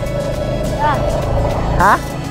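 Motorcycle engine running on the move, with background music over it. A short questioning 'Hah?' comes near the end.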